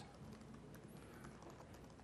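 Faint, irregular keystrokes on an Apple MacBook laptop keyboard as code is typed in.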